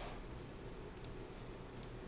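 A few faint computer mouse clicks, one about a second in and two in quick succession near the end, over quiet room hiss.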